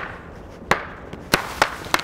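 Lightsaber duel: blades clashing in five sharp strikes at uneven intervals, three of them in quick succession near the end.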